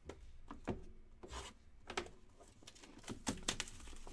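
Hands handling trading cards in rigid plastic holders and a shrink-wrapped cardboard hobby box: a string of sharp clicks and taps, with short bursts of plastic-wrap crinkling.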